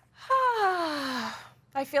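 A woman's voiced, breathy sigh that falls steadily in pitch over about a second. Speech starts near the end.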